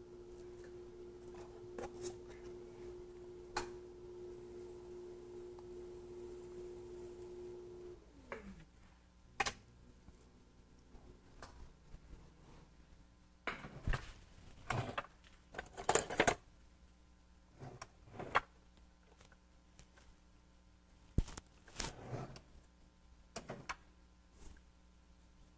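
Electric potter's wheel running with a steady motor hum, which slides down in pitch and dies away about eight seconds in as the wheel is stopped. After that come scattered clicks and knocks of tools and clay being handled.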